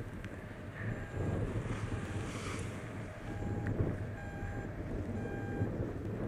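Wind rumbling on an action camera's microphone, with faint short beeps recurring every second or so.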